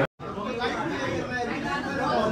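Indistinct background chatter of many people in a busy restaurant dining room, after a momentary cut-out of all sound at the very start.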